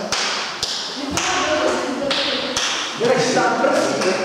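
A few sharp taps about half a second apart, then another near the middle, in a large echoing hall, with voices chattering toward the end.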